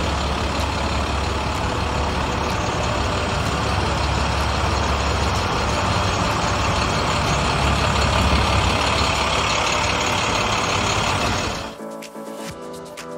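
2009 International DuraStar 4300 box truck's diesel engine idling: a steady low rumble with a broad hiss over it.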